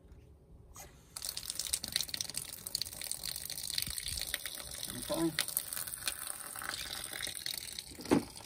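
Garden hose tap opened with the mains water shut off, water running out of the spout as the pipe drains. The hiss of running water starts about a second in and carries on steadily.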